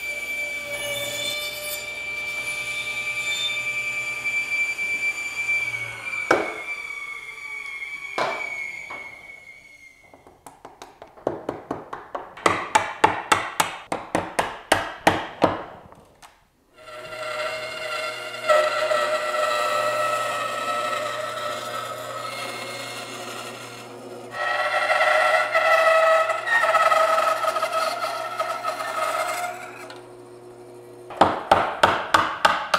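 Table saw running and ripping a mango wood slab, a steady whine. Then about twenty quick hammer blows drive a chisel along the bark of the live edge. In the second half a bandsaw runs and cuts through the slab.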